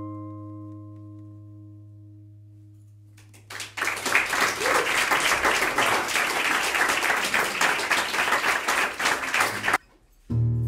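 The final chord of an acoustic guitar rings out and fades over about three seconds. Then an audience applauds for about six seconds, and the applause cuts off suddenly near the end.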